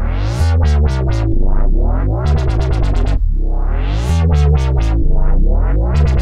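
Synthesized dubstep wobble-bass pattern looping from FL Studio: deep, heavy bass with rising filter sweeps. The phrase repeats about every three and a half seconds.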